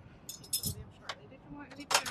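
Brief light jingling clinks, once about half a second in and again near the end.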